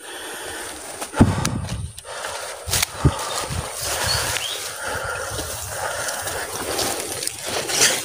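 Leafy undergrowth rustling and crackling as it is pushed aside by hand to reach a hooked fish, with a few sharp knocks in the first three seconds.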